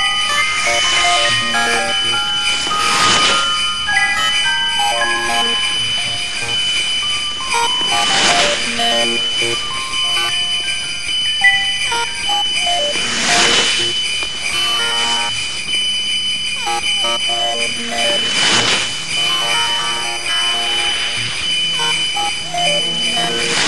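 Lo-fi electronic sound collage of layered looping toy-like melody notes from a circuit-bent Christmas toy, over a constant high whine. A whooshing swell of noise comes back about every five seconds.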